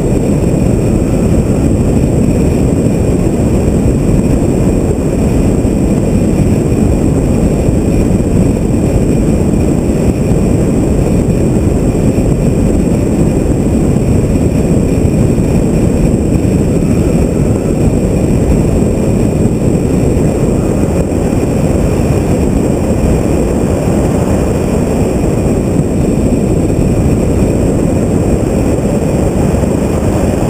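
Loud, steady wind and road rumble on a camera mounted on the hood of a BMW M3 convertible driving an autocross run, with the car's engine mixed in underneath.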